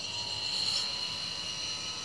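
Toyota Prius (third-generation) brake actuator's electric pump whining steadily under a hiss, as brake fluid and air rush out of the opened left-front bleeder.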